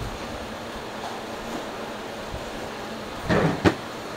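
Steady background hiss, then about three seconds in a short rustle ending in a sharp knock as the phone recording the scene is handled and moved.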